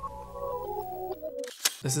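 Channel logo sting: a short run of electronic notes stepping down in pitch, cutting off about one and a half seconds in, followed by a single sharp click just before speech resumes.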